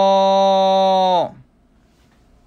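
A man's voice holding one long, steady vowel at the end of the show-title call 'Kinba no Kinba Radio'. It slides down in pitch and stops just over a second in, leaving faint room tone.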